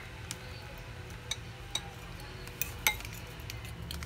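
Metal fork clinking against a ceramic bowl while beating eggs: a few irregular clinks, the loudest a little before three seconds in.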